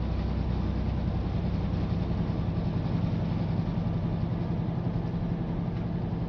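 Steady road and engine noise of a car driving at highway speed, heard from inside the vehicle as a constant low hum under a wash of noise.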